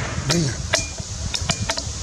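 The report of a 17 HMR rifle shot (Savage 93R) dying away, followed by a brief voice sound and several sharp clicks.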